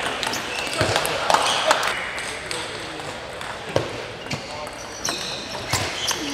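Celluloid/plastic table tennis ball clicking off bats and the table: sharp, irregular single clicks about half a second to a second apart, with a few heavier thuds among them.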